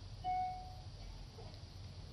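A pause in the press-conference audio: quiet room tone with a steady low hum, and one faint short tone about a quarter of a second in.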